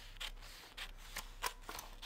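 Large black-handled dressmaking scissors cutting through paper pattern sheet along a traced line: a quick run of short snips, about three a second.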